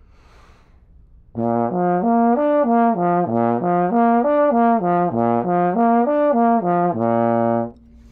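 Trombone playing a lip slur in first position, slurring B flat, F, B flat, D and back down, several times over. The notes begin about a second and a half in, and the exercise ends on a held low B flat just before the end.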